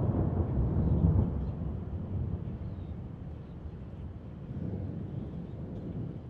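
Low rolling rumble of thunder, gradually dying away.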